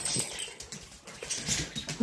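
A dog's claws clicking and pattering irregularly on a hard wood floor.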